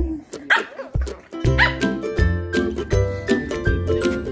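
Chow chow puppy giving two short, high-pitched barks, about half a second and a second and a half in, over background music with a steady beat.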